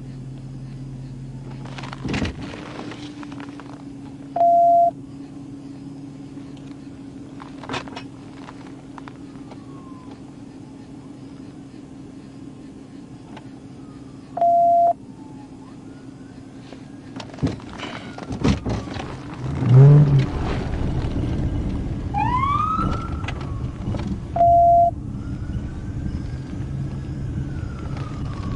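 Inside a police cruiser: low engine hum, with a short electronic beep repeating about every ten seconds and scattered clicks and knocks. A heavy thump comes about two-thirds in, followed by a brief rising-and-falling siren wail.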